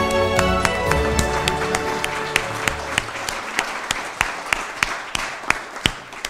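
Music fading out over the first few seconds as an audience breaks into applause. A few sharp, close claps stand out above the general clapping, which tails off near the end.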